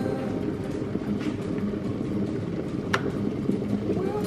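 Stainless-steel electric kettle at a full boil, then its switch clicks off about three seconds in as it shuts itself off at the boil.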